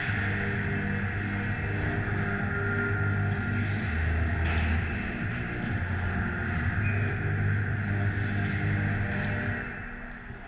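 Music playing over an ice rink's sound system: held bass notes that step to a new pitch every second or two, over a steady background hiss, fading near the end.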